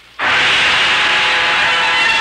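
Studio orchestra music entering abruptly about a quarter second in: a loud, sustained chord of many held notes, the opening bridge of a radio drama act.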